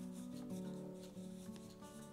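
A cloth rubbing wax into a wooden pipe bowl, faint, under soft background music.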